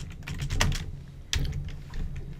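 Computer keyboard typing: a run of irregularly spaced keystrokes as a short phrase is typed in.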